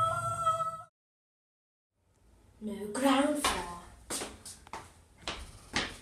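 A boy's voice holds a steady high 'ooh' note that cuts off abruptly just under a second in, followed by dead silence. Then a wordless, whiny voice sounds, followed by several sharp taps and knocks in the lift car.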